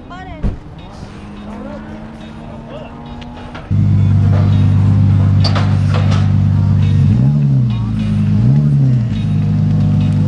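A drift car's engine comes in loud and close a little over a third of the way in, idling steadily, then is revved briefly twice, rising and falling back, near the end as the car is driven off its trailer.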